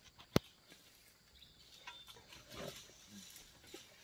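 A sharp click about a third of a second in, then a few faint, short animal calls from a herd of gaur (Indian bison) in the second half.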